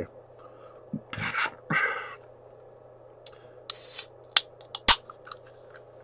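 Aluminium LaCroix sparkling-water can opened by its pull tab: a short sharp hiss of escaping carbonation about four seconds in, followed by a few clicks from the tab.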